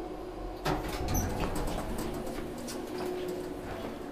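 Schindler traction elevator car arriving: a clunk about two-thirds of a second in, then the automatic doors sliding open over a steady hum.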